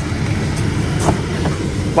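Ford Ranger's turbocharged 2.3-litre EcoBoost four-cylinder idling steadily after starting right up, with a couple of sharp clicks from the driver's door latch about a second in.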